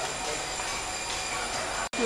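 Steady rushing room noise of a busy barbershop, with faint voices in the background. The sound drops out for an instant near the end.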